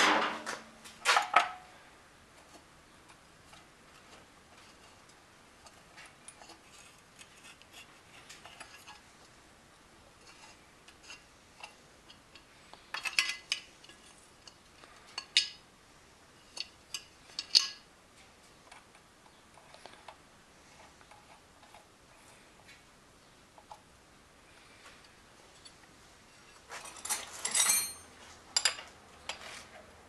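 Scattered metallic clinks and knocks of an old outboard motor's carburetor air box and hand tools being handled as the box is taken off, with a quick run of ringing clinks near the end.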